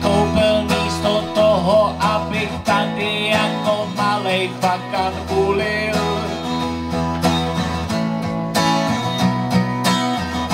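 Steel-string acoustic guitar strummed in a steady rhythm, accompanying a man singing a folk song, with his voice coming in a few times over the guitar.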